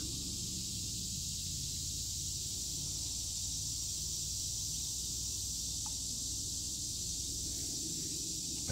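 Steady outdoor ambience: an even high hiss with a low steady rumble underneath, and a single faint click about six seconds in.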